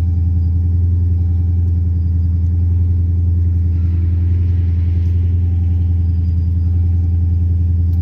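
Cammed, supercharged Hemi V8 of a 2011 Ram 1500 idling steadily, heard from inside the cab as a deep, even drone.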